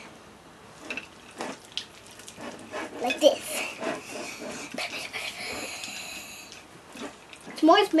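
Silicone spatula stirring partly melted chocolate chips in a glass pie dish: soft scrapes and clicks of chips against the glass. A high, thin whine sounds through the middle for about three seconds.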